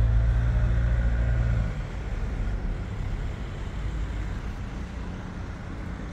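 Motor vehicle engine running close by, a low steady hum that is loudest for the first couple of seconds and then fades, leaving general street noise.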